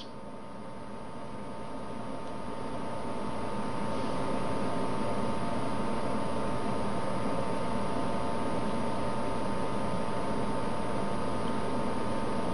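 Steady background hiss with a faint hum of a few steady tones, swelling over the first few seconds and then holding level.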